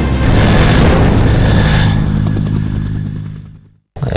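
Helicopter turbine and rotor running loud under background music, fading out over the last second and a half into silence.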